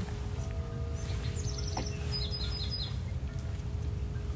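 A small bird chirps two quick runs of short, high notes in the middle, over a low steady background rumble with a faint steady hum.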